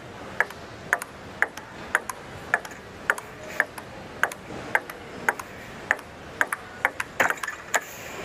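A table tennis rally: the ball clicking off bats and the table about twice a second, the hits coming quicker near the end.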